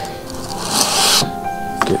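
A short rustling swish of a large cardboard packaging sheet being handled, lasting about half a second around the middle, over soft background music.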